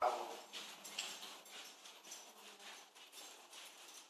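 A ballpoint pen scratching on paper on a wooden table in short, irregular strokes, after a brief louder sound right at the start.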